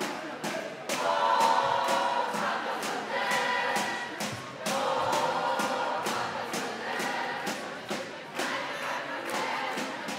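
Crowd of fans singing a chant in a sports hall, two sung stretches with a short break about halfway, over repeated sharp thuds of the ball.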